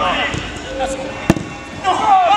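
A football kicked once on artificial turf, a single sharp thud a little past halfway, with players' voices calling around it.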